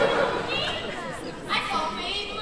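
Indistinct speech from several voices in a large hall, too muffled by distance and room echo to make out.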